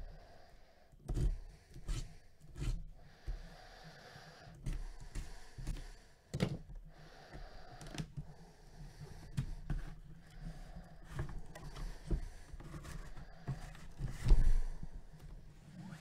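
Cardboard box being cut open and handled: scraping and rustling of the cardboard with irregular knocks, the loudest about six and fourteen seconds in.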